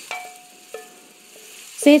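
Faint sizzling of hot oil in a cast-iron kadai as chilli-coated chopped mango is added, with two faint steady tones held for about a second. A voice comes in near the end.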